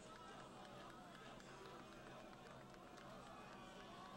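Near silence: a faint, distant murmur of voices at the stadium.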